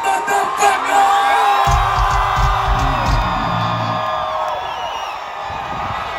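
A live rock band at full volume finishing a song. Long held guitar notes ring over a heavy low bass and drum rumble from about two seconds in to four, then thin out, leaving the crowd whooping and cheering.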